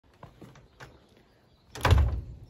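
A few light clicks, then a paneled door swinging shut with a loud thump near the end.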